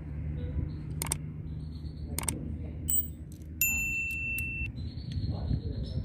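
Sharp metallic clicks and taps from handwork on a car throttle body, three spread over the first half, then a bright metallic ring lasting about a second, over a steady low hum.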